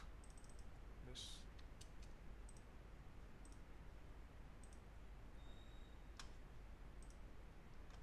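Near silence with a few faint, scattered clicks of a computer keyboard and mouse. A brief faint high tone sounds a little past the middle.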